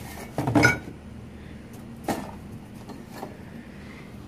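Junk being rummaged through in a dumpster: plastic and cardboard items clattering and knocking, loudest about half a second in, with smaller knocks around two and three seconds.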